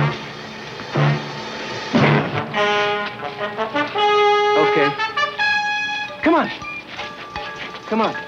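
Film score with brass holding loud sustained chords from about two and a half seconds in. Men's voices shout over it, once or twice early and again about six seconds in.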